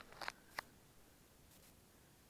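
Near silence: room tone, with a faint short rustle and one sharp click in the first second.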